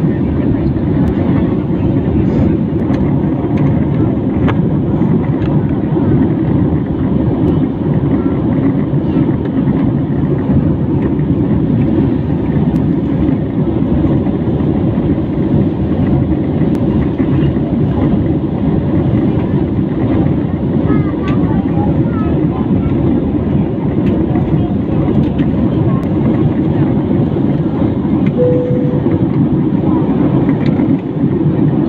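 Steady cabin noise of an Airbus A320-family jet airliner in flight, heard from a window seat: a constant low rush of engines and airflow that does not change.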